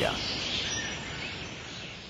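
A steady, noisy background bed on the soundtrack, with no clear tones or strokes, fading out gradually toward silence.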